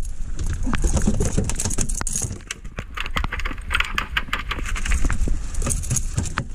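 Wind buffeting the microphone in steady rain, with many small irregular taps and clicks and a stretch of hiss in the middle.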